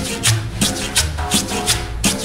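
Cumbia music with a steady beat: a sharp, shaker-like percussion stroke about three times a second over a bass line.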